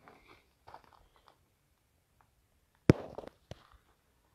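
Faint crunches and rustles, then a single sharp knock about three seconds in, followed by a few smaller clicks.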